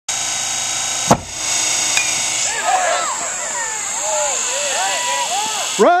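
Crack of the bat on the ball about a second in, followed by spectators at a youth baseball game yelling and cheering over a steady high-pitched background hiss; near the end one voice shouts "Run!".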